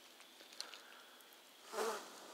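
Campfire embers crackling quietly with scattered small pops, and one brief louder burst of sound near the end.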